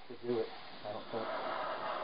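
Aerosol spray can hissing in a burst of about a second through its straw nozzle, starting about a second in, putting foam cleaner on a telescope mirror. A short voice sound comes just before it.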